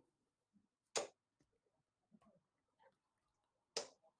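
Two darts striking a bristle dartboard, two short sharp hits about three seconds apart.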